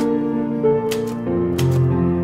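Background music of slow, sustained chords with a crisp, click-like beat, about three clicks every two seconds.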